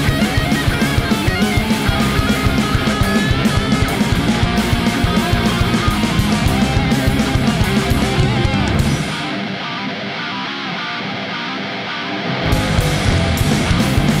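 A thrash metal-punk band playing live: distorted electric guitars, bass and fast drums. About nine seconds in, the drums and bass drop out for some three seconds, leaving the guitar on its own, and then the full band comes back in.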